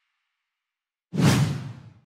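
Whoosh sound effect of an animated logo ending: silent at first, then about a second in a single sudden whoosh with a heavy low end that fades out within under a second.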